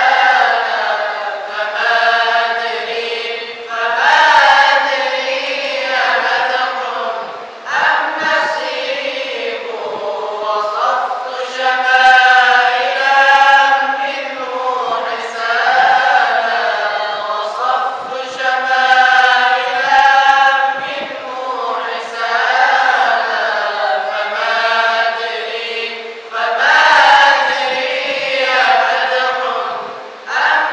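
A group of male voices, men and boys, chanting Quran recitation (qirat) together in long, melodic, ornamented phrases, led by a qari at a microphone, with brief pauses for breath between phrases.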